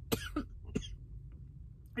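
A woman coughing a few short times in the first second, harsh coughs after a hit from a cannabis vape cartridge.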